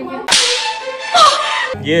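A sudden loud swish sound effect, starting a moment in and lasting about a second and a half, with a short falling whistle in the middle.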